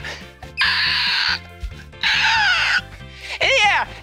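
Screech of a bird of prey, given for a bald eagle: two raspy calls, each under a second and falling in pitch, over background music with a steady bassline. A shorter pitched call follows near the end.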